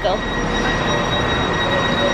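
Steady rumble and hiss of a railway station with a train standing at the platform, and a faint, steady high whine over it.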